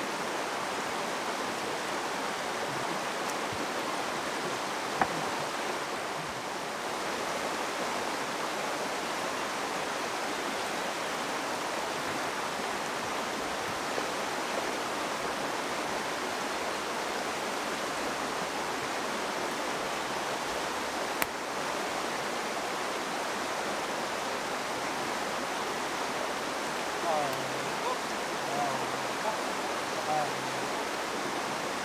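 Steady rushing of a nearby stream. There are two sharp clicks, and near the end a few soft knocks and short squeaks.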